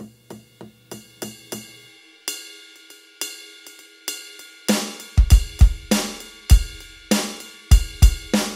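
Drum-kit samples triggered from a Roland SPD-SX PRO sampling pad struck very lightly with sticks, the samples still firing despite the soft playing. Sparse, softer hits come first, then from about halfway through heavier hits with a deep kick drum.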